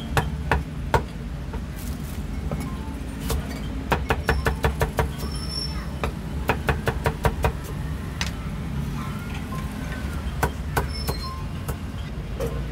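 Meat cleaver chopping roast pork and pig offal on a thick round wooden chopping block: runs of quick, sharp knocks, about five a second, with pauses between. A steady low rumble runs underneath.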